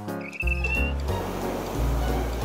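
Cartoon background music with a short, high rising squeak near the start. From about half a second in, a deep, noisy swell rises under the music.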